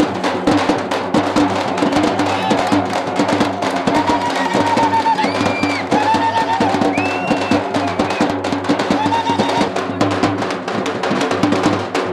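Fast, dense drumming, with a melody of held, slightly bending notes over it.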